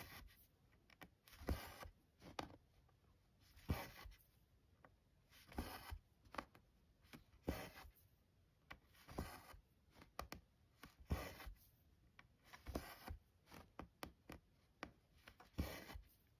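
Hand cross stitching: a tapestry needle pushing through 14-count Aida cloth, and two strands of cotton embroidery floss drawn through the fabric with a soft rasp about every two seconds, with small sharp clicks in between.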